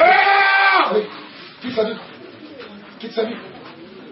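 A person's long wailing cry in the first second, a held voice that rises and falls in pitch, followed by quieter, scattered voice sounds.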